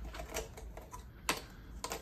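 Light, irregular plastic clicks and crackles from a small clear plastic tub being handled and its snap-on lid pressed into place, the sharpest click a bit over a second in.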